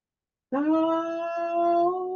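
A single voice humming one long held note. It comes in about half a second in with a short upward slide, after a moment of silence.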